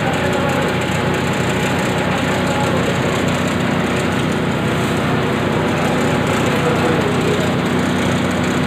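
Zinc and aluminium grinding mill plant running steadily: a loud, even mechanical rush with a steady low hum underneath, no changes or knocks.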